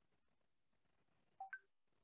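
Near silence broken by a short electronic two-note beep about one and a half seconds in: a lower tone followed at once by one about an octave higher, like a video-call notification chime.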